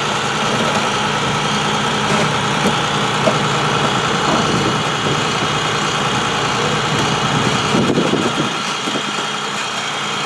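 Tow truck engine running steadily, powering the winch that drags a waterlogged car up the riverbank. The drone holds even throughout, with a faint steady whine above it.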